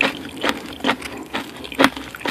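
Close-miked chewing of raw coconut worms (palm weevil larvae): a series of wet mouth smacks, about two a second.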